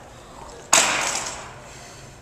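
Jump rope dropped onto a hardwood gym floor: one sudden clatter under a second in, dying away over most of a second in the large hall.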